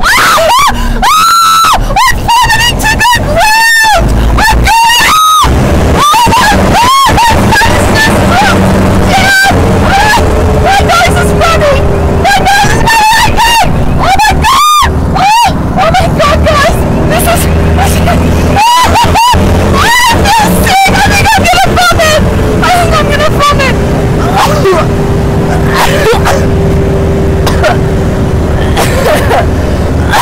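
A woman screaming and shrieking again and again into a headset microphone while the plane tumbles through aerobatic manoeuvres, loud over the steady drone of the aircraft engine. From about a third of the way in, a steady tone sounds and falls slightly in pitch.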